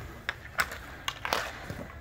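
Hockey sticks knocking on the ice and against each other in a scramble: about five sharp clacks, spread out irregularly.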